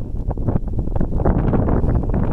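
Wind buffeting the microphone: a loud, gusty low rumble that swells and dips.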